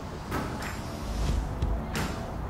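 A rugby ball tossed up and caught in both hands: a few short slaps of the ball landing in the palms, the last one near the end, over a low rumble.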